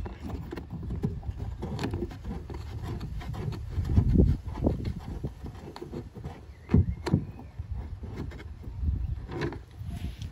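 Close handling noise: rubbing and scattered clicks and knocks of plastic car trim as a plastic tail-light retaining screw is turned out by hand. There are a couple of louder knocks, about four and seven seconds in.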